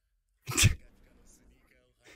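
A single short, breathy exhale from a man, about half a second in, like a sharp nasal breath or the start of a laugh, followed by faint background speech.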